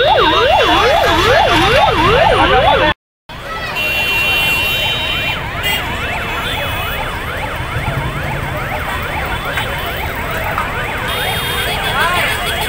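Ambulance siren wailing in fast rising-and-falling sweeps, about three a second, from an ambulance stuck in a traffic jam. It is loud at first; after a brief cut in the sound about three seconds in, it goes on fainter under the noise of the jammed traffic.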